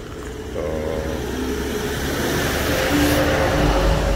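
A motor vehicle on a nearby road, its engine and tyre noise growing steadily louder as it approaches, with a deepening low rumble near the end.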